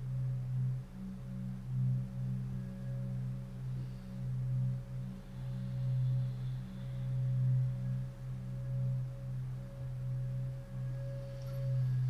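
A low, sustained drone tone on the film's soundtrack, with fainter higher tones above it. It swells and dips about once a second, like a resonating singing bowl.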